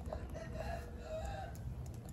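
A single drawn-out animal call, wavering in pitch and lasting about a second and a half, over a steady low rumble.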